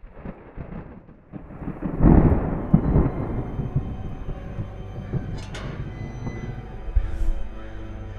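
Thunder rumbling and rolling, loudest about two seconds in, with eerie film music fading in beneath it and settling into sustained notes toward the end.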